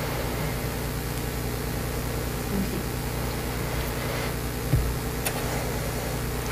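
Steady low background hum with an even hiss, the room's ambient noise in a pause of speech. There is one soft thump about five seconds in.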